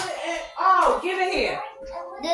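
Indistinct voices talking in the room, one louder exclamation about a second in.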